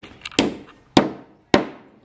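Claw hammer driving a nail into a plywood board: three hard blows about half a second apart, each ringing briefly.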